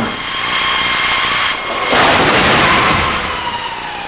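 A 1996–99 Honda Civic in a 40 mph frontal offset crash test: a steady run-up noise with a thin high whine, then about two seconds in a loud burst of crunching metal and breaking parts as the car hits the barrier, followed by a whine that slowly falls in pitch.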